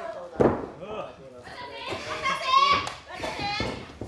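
A hard impact in a pro-wrestling ring about half a second in, followed by shouting voices in the hall.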